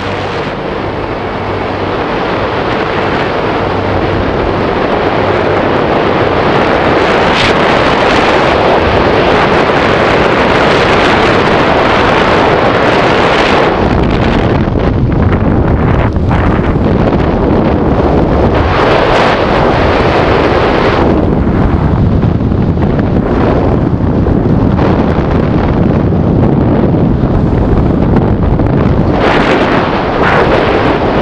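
Wind rushing over the camera microphone during a tandem parachute descent under canopy: a loud, steady roar of airflow that builds over the first few seconds and then swells and eases in gusts.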